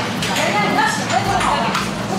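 Indistinct voices with music playing.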